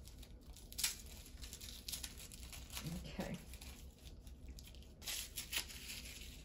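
Wrapping crinkling and tearing in short, irregular bursts as a package is worked open by hand.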